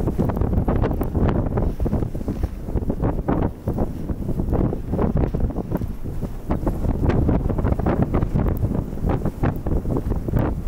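Strong Arctic wind battering the microphone in a snowstorm, a loud low rumble that surges and drops in irregular gusts.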